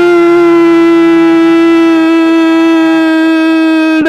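A male radio football commentator's long drawn-out 'goooool' cry, one loud held note that sags slightly in pitch toward the end, announcing a goal.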